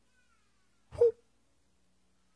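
A man's single short voiced grunt into a handheld microphone about halfway through, with near silence around it.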